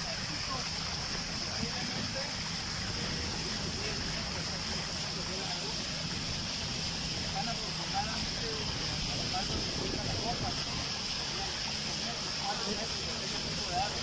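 Steady rushing noise of a small boat under way on open water, wind and water noise on the microphone.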